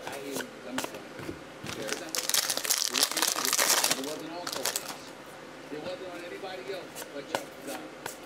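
A trading-card pack wrapper crinkles loudly as it is torn open, for about two seconds starting two seconds in, with softer rustling and tapping of cards being handled around it.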